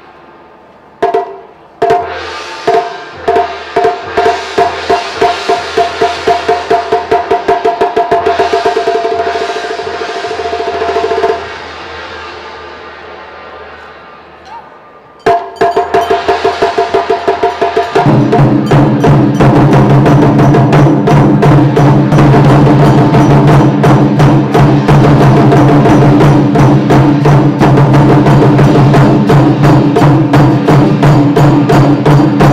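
Chinese drum ensemble playing large barrel drums: spaced strikes speed up into a fast roll over a ringing held tone, break off about 11 seconds in, then start again about 15 seconds in. From about 18 seconds the drumming turns fast and loud, with a band's low sustained notes underneath.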